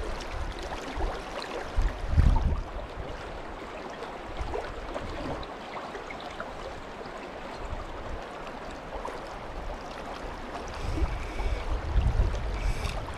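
Creek water running steadily over a shallow rocky riffle, with a brief low thump about two seconds in.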